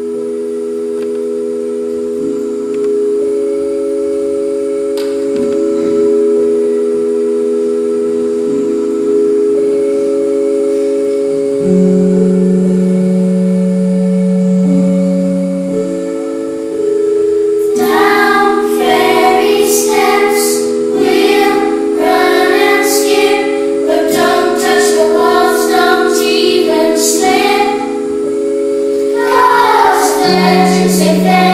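Electronic keyboard playing slow, sustained chords, with a deeper held bass note entering about twelve seconds in. About eighteen seconds in, a brighter, quicker melodic part with crisp high ticks joins over the held chords.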